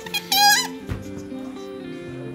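Background music playing, with a short, high squeak about half a second in from the rubber neck of a toy balloon being stretched at a child's mouth, then a soft knock just before a second in.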